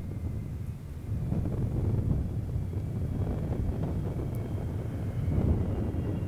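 Low, steady rumble of the Boeing 747 Shuttle Carrier Aircraft's four jet engines as it rolls out on the runway just after touchdown, with a faint high turbine whine over it. Wind buffets the microphone.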